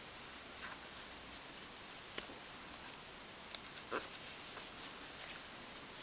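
Faint clicks and light rustle of yarn being worked by hand with a metal crochet hook, a few scattered ticks over a steady background hiss with a thin high whine.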